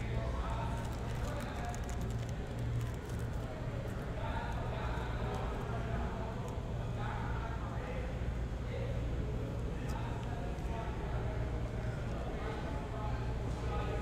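Indistinct background chatter of several voices over a steady low hum. Occasional faint light taps and rustles come from trading cards and a plastic card sleeve being handled.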